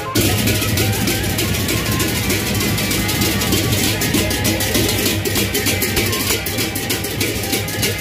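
Sasak gendang beleq gamelan ensemble playing on the move, led by many pairs of hand cymbals clashing in a fast, continuous, dense pattern over a steady low sound.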